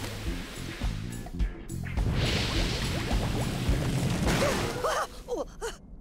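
Cartoon steam vent hissing in bursts over background music, the largest burst about two seconds in. Short gasps from a voice near the end.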